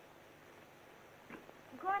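Steady hiss of an old film soundtrack, with a brief soft sound a little past one second in. Near the end, a woman's voice begins a question.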